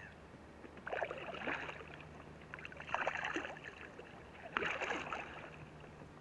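Paddle strokes from a Gumotex Baraka inflatable canoe: three splashing dips of the blade into the water, one about every second and a half to two seconds.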